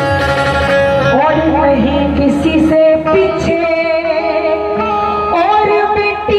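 A woman singing a Haryanvi ragini live into a microphone over a PA system, with instrumental accompaniment. She bends between notes and holds some of them for a second or more.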